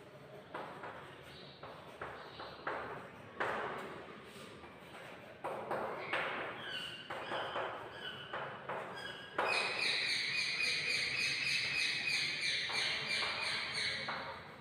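Chalk writing on a chalkboard: a series of short scratching strokes, then, about two-thirds of the way in, a longer, louder high-pitched squeaky scrape lasting a few seconds.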